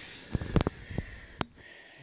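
Handling noise from a camera tripod being moved: about five light clicks and knocks in quick, uneven succession over the first second and a half.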